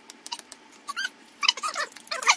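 A run of short, high-pitched squeaks gliding up and down, starting about a second in, after a few faint clicks.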